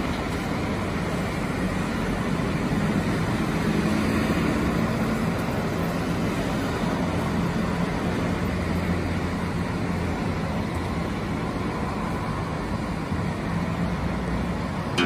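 Road traffic on a multi-lane road: a steady hum of passing cars and vans, engines and tyres, swelling slightly about four seconds in.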